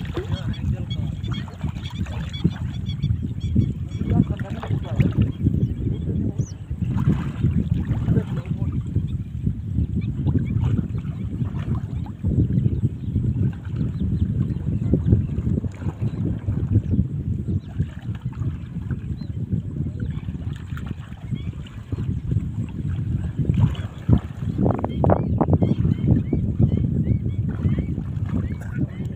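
Wind rumbling on the microphone over water sloshing around people wading in shallow water, with indistinct voices talking.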